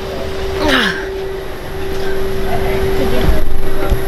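Steady hum and low rumble inside an airliner cabin, with a brief falling vocal sound about a second in and a couple of low thumps near the end.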